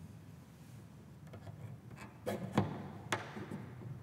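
Handling noise from a cello and its fittings: a few knocks and clicks, the loudest about two and a half seconds in, over a low steady hum.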